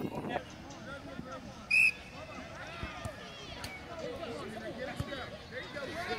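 One short, loud blast of a referee's whistle about two seconds in, over the scattered high-pitched shouts and chatter of young children and spectators across the field, with a few faint knocks of the ball being kicked.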